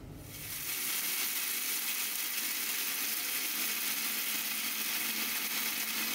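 Electric mixer grinder running with a stainless steel jar of dry whole spices, grinding them to powder: a steady whirring hiss that builds up over the first second and then holds.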